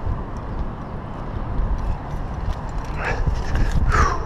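Climbing shoes tapping and scuffing against the granite while the climber is lowered on the rope, over a steady low rumble of wind on the microphone. A short breath or vocal sound comes near the end.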